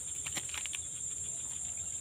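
A steady, high-pitched insect chorus drones on without a break, with a few faint clicks in the first second.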